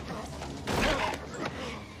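A creak, loudest about three quarters of a second in.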